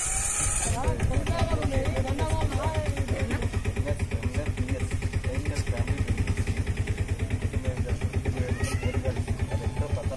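A small engine idling with a fast, even beat of about nine pulses a second, with people talking over it.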